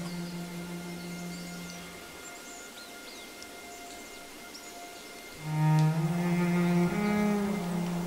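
Dramatic film-score music of low, sustained bowed-string notes. One held note fades out about two seconds in. After a quieter lull, a loud new low note swells in past five seconds and steps up in pitch near the end.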